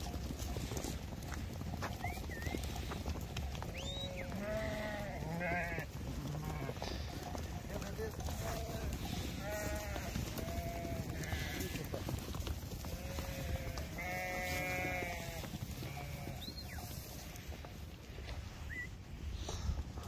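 A flock of sheep bleating, with several calls overlapping in clusters about four, ten and fourteen seconds in, over a steady low rumble.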